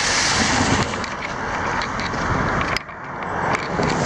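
A car passing close by on a wet road, its tyres hissing on the damp surface, dying away about three seconds in; then another vehicle's tyre noise building near the end.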